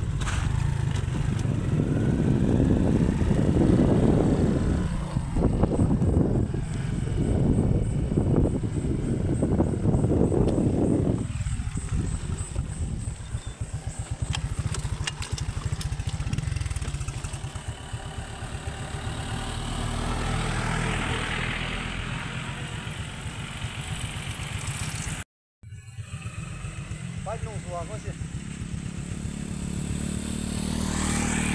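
Motorcycle running while being ridden, with wind buffeting the microphone, loudest in the first dozen seconds and then somewhat quieter; the sound cuts out briefly near the end.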